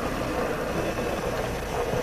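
Steady background hiss and hum of room tone, with no distinct sound standing out.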